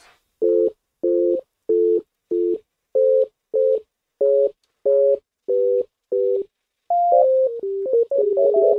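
Dull sine-wave synth tone played from a MIDI keyboard: about ten short two- and three-note chords, evenly spaced at a little under two a second, then a falling run of single notes near the end.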